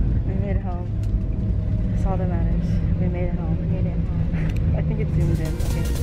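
Steady low drone of an airliner cabin, with short bits of voices over it; music comes in near the end.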